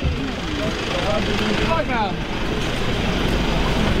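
A vehicle engine running steadily close by, most likely the police van's, as a constant rumble with faint voices over it.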